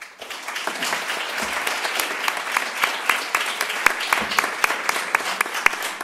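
Audience applauding, the clapping starting all at once and holding steady.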